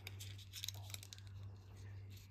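Faint rustling and crinkling of a small piece of white card being folded and pressed between the fingers, a few light crackles clustered about half a second in, over a low steady hum.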